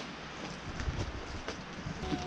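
Steady wind noise on the microphone, a low rumble under an even hiss, outdoors in the rain.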